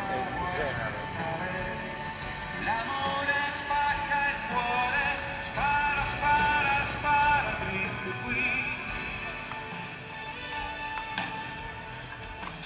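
Amplified live pop music from a concert stage some way off, its melody in long held notes with one wavering note about eight seconds in, mixed with people talking nearby.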